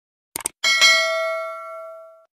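Sound-effect mouse click, a quick double click, followed by a bell chime that rings out with several steady tones and slowly fades: the notification-bell cue of a subscribe-button animation.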